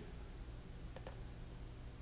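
A single computer mouse click about a second in, over a faint steady low hum.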